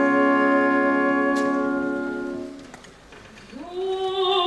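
Symphony orchestra holding a sustained chord of classical music that fades away about two and a half seconds in. After a brief lull, a singer's voice enters near the end, gliding up into a held note with vibrato.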